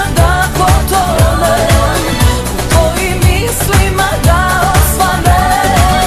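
Balkan pop song: a steady dance beat with a kick drum about twice a second under a wavering, ornamented lead melody.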